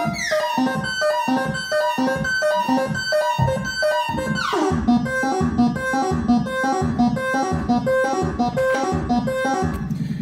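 Eurorack modular synthesizer playing a repeating eight-step melody from a Baby-8 step sequencer through a wavetable oscillator (Mutable Instruments Braids in wavetable mode). The notes are short and plucky, about three to four a second. A bright falling sweep comes at the start and again about halfway.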